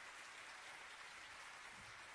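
Near silence: a faint, even hiss of concert-hall room noise between spoken announcements.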